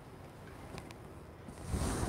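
Quilting fabric being handled: a couple of faint ticks, then a soft rustling swish of the layered cotton near the end.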